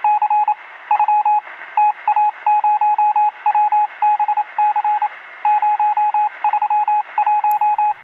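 Morse code: one steady beep tone keyed on and off in short and long beeps, with a constant hiss of radio static between them, thin and narrow in sound like a radio transmission.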